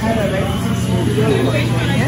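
Café background: indistinct voices over a steady low hum.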